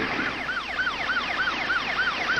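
Ambulance siren in a fast yelp, its pitch rising and falling about three times a second, on a code-three emergency run.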